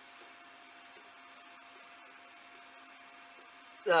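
Quiet room tone with a faint, steady electrical hum at two pitches; a man's voice starts right at the end.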